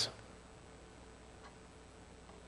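Quiet room tone in a pause between spoken sentences, with a faint steady hiss and low hum.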